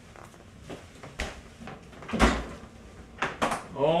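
A few light clicks and knocks, then one heavier thud about two seconds in, as kitchenware is handled at a wooden counter.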